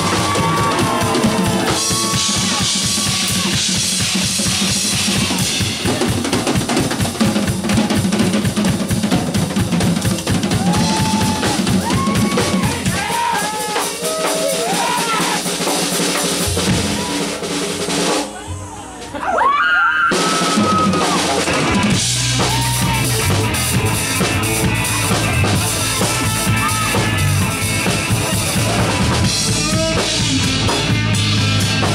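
Live rock band led by a drum kit played hard, with snare and rimshot hits and rolls over bass, and electric guitar notes bending in pitch. About 18 seconds in the drums drop out briefly, leaving a sliding guitar note, before the full band comes back in with heavy bass.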